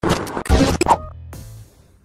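Electronic intro sting with a scratch-like sound effect: a quick run of sharp hits and noisy sweeps in the first second, then a low drone that fades away.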